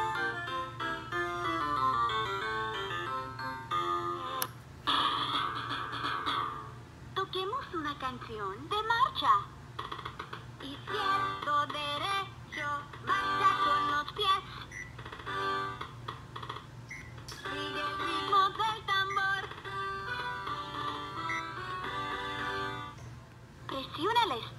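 LeapFrog Learn & Groove Color Play Drum playing a song through its built-in speaker: an electronic melody of quick notes, with gliding, wavering lines in the middle and near the end.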